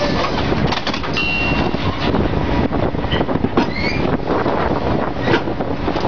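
Drilling rig floor machinery running loudly and steadily, with repeated metal-on-metal clanks and brief high squeals as the drill pipe is worked at the rotary table.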